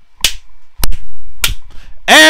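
Three sharp hits, evenly spaced a little over half a second apart, each with a short tail.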